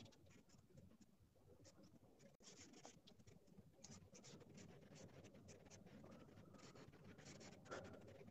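Faint, irregular scratching strokes of charcoal on paper as a portrait is shaded.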